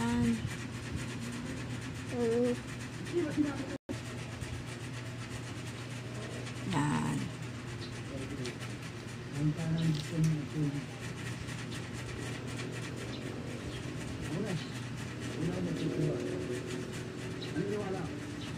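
Faint, indistinct voices in short scattered snatches over a steady low hum of room noise.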